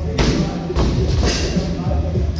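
A loaded barbell with black bumper plates dropped onto the rubber gym floor: a heavy thud a moment in, then a second one about half a second later as it bounces. Music plays behind it.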